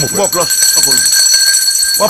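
A steady, high-pitched electronic tone at several pitches at once, like an alarm, held on under quieter speech.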